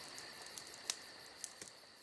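Crickets chirping steadily, with a couple of faint clicks, fading out near the end.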